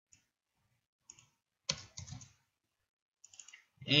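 A few scattered keystrokes on a computer keyboard, short sharp clicks with silence between them and a quick little run near the end, as lines of code are copied and pasted in an editor.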